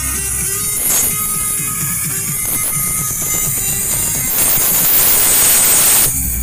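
Loud pop music with a steady beat playing from a carnival float's sound system. In the last second and a half or so a steady hiss rises over it.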